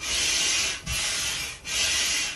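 Air pump inflating an inflatable dinosaur sprinkler: a rush of air with each pump stroke, about three strokes with short breaks between them.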